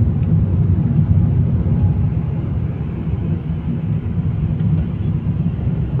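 Steady low rumble of a car driving on a wet road, engine and tyre noise heard from inside the cabin.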